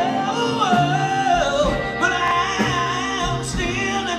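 Live electric blues band playing, with a lead line of long notes that bend in pitch over piano, bass and drums.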